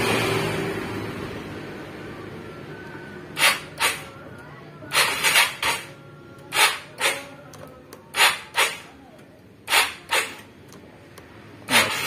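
A Vespa Primavera automatic scooter being started with short repeated stabs of the starter that don't catch, heard as short sharp bursts mostly in pairs about every second and a half. The scooter is hard-starting.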